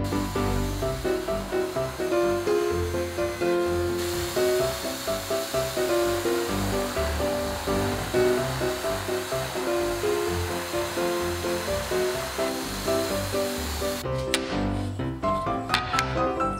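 Background piano music over the steady whir of an electric drill in a drill stand, boring holes through a wooden strip. The drill noise stops about two seconds before the end, leaving the music.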